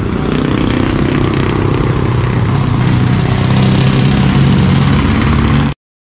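Motorcycle engine running, rising a little in pitch about halfway through; the sound cuts off suddenly near the end.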